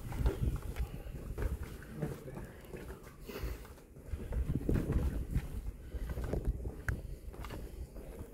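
Breeze buffeting the phone's microphone as a fluctuating low rumble, with scattered faint voices.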